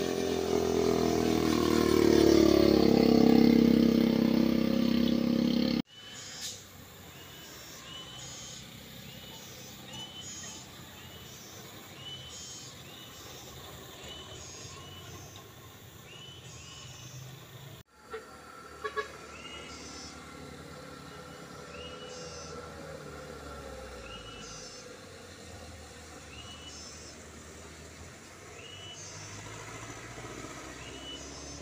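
Motorcycle engines climbing through a sharp bend, loud and rising in pitch for the first few seconds. The sound then drops to quieter passing traffic of light trucks and a minibus, with a short high chirp repeating about once a second.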